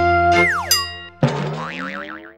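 Short playful logo jingle for a TV channel ident: held musical notes, a quick downward pitch slide about half a second in, then after a brief break a new chord with a wavering high tone.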